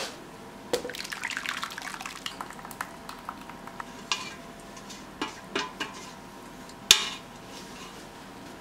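Thick, wet sweet potato mixture scraped out of a mixing bowl with a metal utensil into a metal baking pan: soft scraping and plopping with scattered clicks and knocks of the utensil against the bowl, the sharpest knock about seven seconds in.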